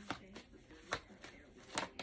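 A deck of tarot cards being shuffled by hand: a few short card flicks, the loudest near the end.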